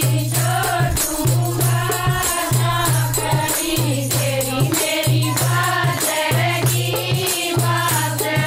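A chorus of women singing a Haryanvi folk song (lokgeet) together, with hand clapping and a rattling percussion accompaniment over a low, repeating beat.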